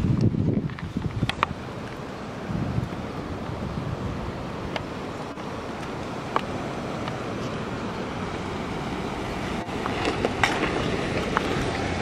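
Wind buffeting the camera microphone, a steady rushing noise with a few faint sharp clicks scattered through it, growing louder over the last couple of seconds.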